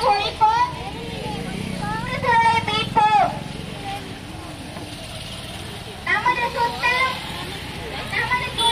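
Voices of people in a marching street rally calling out in short bursts: near the start, around two to three seconds in, and again around six to seven seconds. Under them runs the low, steady hum of a motor vehicle engine, strongest in the first half.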